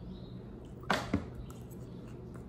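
Two short sharp clicks about a quarter of a second apart from a metal fork while a salad is eaten.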